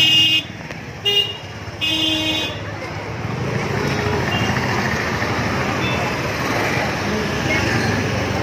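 Vehicle horns give three short toots in the first two and a half seconds, then a steady hum of motorcycle and scooter traffic.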